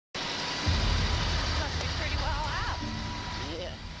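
Outdoor camcorder sound at a large building fire: a steady low rumble, with a vehicle engine humming and a few distant voices rising and falling.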